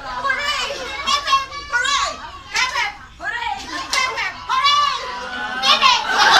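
A group of women and girls laughing, shrieking and calling out excitedly, their high voices overlapping.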